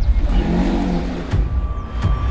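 A car engine revs up and falls back over a deep low rumble, followed by a sharp click. A thin steady high tone sets in near the end.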